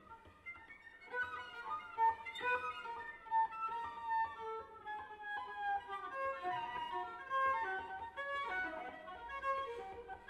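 Solo cello bowed in a quick succession of short notes high on the instrument, growing louder about a second in.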